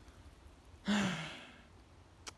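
A man sighs once about a second in: a short voiced start that falls in pitch, trailing into a breathy exhale that fades away. It is a sigh of hesitation before wading into marshy water.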